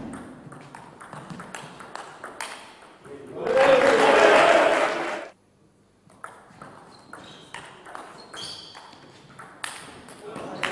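Celluloid-type table tennis ball being hit by rackets and bouncing on the table during rallies, a string of sharp clicks. In the middle comes a loud burst of voices lasting about a second and a half, then the clicking of the next rally.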